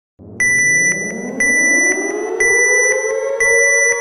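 Electronic dance-music intro build-up: a synthesizer tone slowly sweeping upward in pitch for about three and a half seconds, then holding. Under it, steady high electronic tones pulse with a beat about twice a second.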